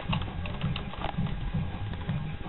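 Typing on a computer keyboard: irregular key clicks over a low, even pulse of about four beats a second.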